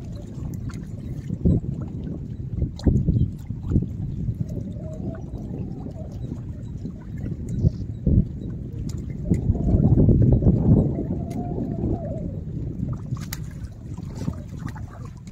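Lake water lapping and sloshing against shoreline rocks, with wind rumbling on the microphone, loudest about ten seconds in, and scattered small splashes and clicks.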